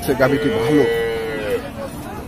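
A cow moos once: a long call of about a second, held steady and then dropping in pitch as it ends.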